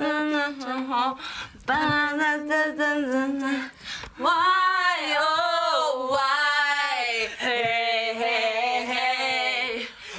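Female voices singing a song unaccompanied, with long held notes and two short breaks between phrases.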